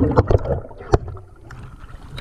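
Water sloshing and bubbling around a diver's underwater camera as it nears the surface beside a boat hull, fading as it goes, with a few sharp clicks and knocks, the strongest about a second in.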